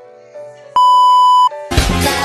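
A soft tinkling melody, broken by a loud, steady, high beep tone lasting under a second, added in the edit. Loud pop music from a stage performance cuts in just after the beep stops.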